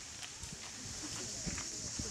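Cicadas giving a steady, high, shrill buzz, over the low murmur of voices in an outdoor crowd.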